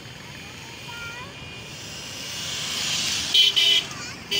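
Motorcycle engines grow louder as the bikes approach on a dirt road, then a vehicle horn gives two short beeps near the end, the loudest sounds here.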